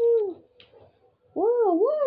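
A child's voice humming a race-car engine noise, a sustained 'mmm' that falls away, then after a pause of about a second a wavering hum that swoops up and down in pitch like a car revving round a track.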